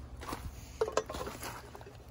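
Light rustling and handling noise with a few sharp clicks and knocks, the loudest about a second in and another about half a second later.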